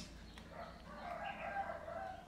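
A rooster crowing faintly: one long crow that starts about half a second in and rises, then holds for over a second.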